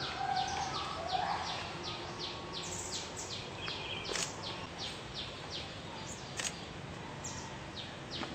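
Birds chirping: a rapid, continuous series of short, high chirps that each drop in pitch, about three a second, over steady outdoor background noise.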